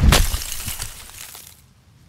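Logo sting sound effect: a sudden heavy impact with a deep boom, followed by cracking and shattering that dies away within about a second and a half.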